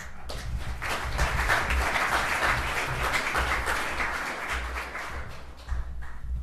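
Audience applauding, swelling within the first second and tapering off near the end.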